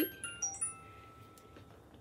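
A short chime: about four bell-like notes struck in quick succession in the first half second, each ringing out, the last fading about a second and a half in.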